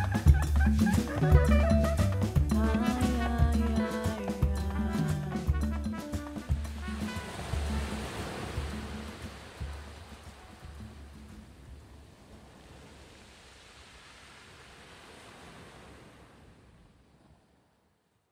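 Instrumental ending of a Cuban band with double bass, drums and percussion playing, which stops on a final hit about six seconds in. The ringing fades out over about ten seconds to silence.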